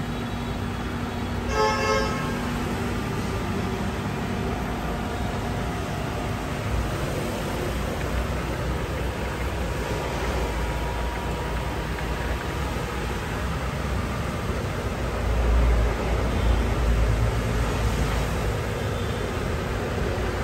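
Steady mechanical running noise with a few faint steady tones, swelling into a louder low rumble about fifteen seconds in.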